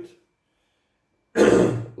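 A man coughs once, a short harsh burst about a second and a half in, after a brief pause.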